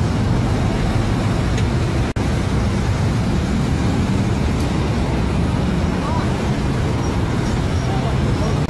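Steady engine and road-traffic noise with a low rumble, with voices mixed in; the audio cuts out briefly about two seconds in.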